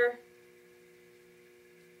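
Faint, steady mains hum, an even electrical drone with no other sounds over it.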